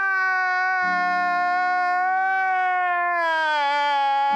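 A man wailing in one long, held cry that sinks in pitch near the end, over a low steady tone.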